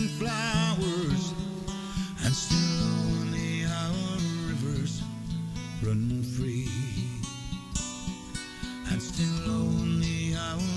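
A man singing a ballad with vibrato to his own strummed acoustic guitar.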